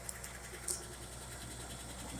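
1960 Chevrolet Biscayne engine idling steadily and fairly quietly, warming up on its first run after some 30 years laid up.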